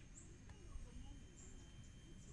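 Near silence: faint outdoor forest ambience with a few faint, short high chirps.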